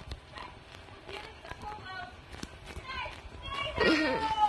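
Indistinct voices with a few sharp clicks, rising to a loud voice just before the end.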